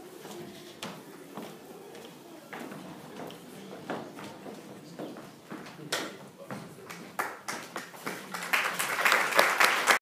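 Audience applause: a few scattered claps and taps at first, swelling into full clapping over the last second and a half.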